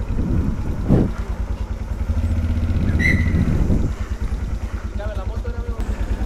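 Italika V200 motorcycle engine running at low revs with a steady low pulse as the bike rolls slowly, with people's voices in the background and a brief high chirp about halfway through.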